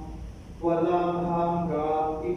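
Unaccompanied chant sung during the Mass: a slow melody of long held notes, beginning after a short pause about half a second in.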